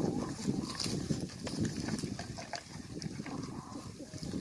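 Dry leaves and sticks rustling and knocking against each other as they are handled on the ground, with many scattered short clicks and crackles.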